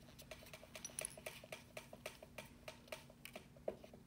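Long acrylic fingernails clicking and tapping while handling a press-on nail tip: a rapid, faint run of light clicks, about five or six a second, with a louder tap about a second in and another near the end.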